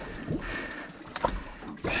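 Wind and water noise on an open boat drifting at sea, with a sharp knock about a second and a quarter in.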